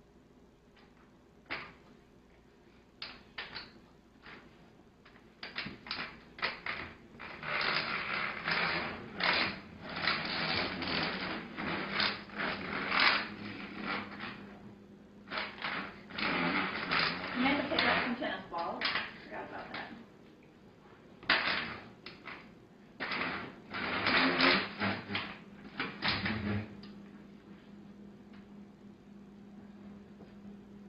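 A metal walker knocking and scraping along a wooden floor with shuffling footsteps, the typical shuffling gait of Parkinson's disease walked without music. Irregular clusters of knocks and scrapes run from about five seconds in until about twenty-six seconds, over a steady low hum.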